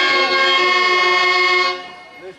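Harmonium holding a sustained reed chord, which cuts off sharply near the end.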